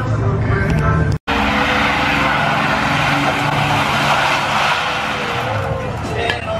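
Pickup truck doing a burnout: the engine runs hard under a loud, steady hiss of spinning, squealing tires. It starts after a brief cut about a second in and eases off near the end.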